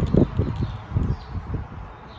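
Low, irregular bumping and rustling of microphone handling noise from a handheld phone being moved about, strongest early and fading toward the end.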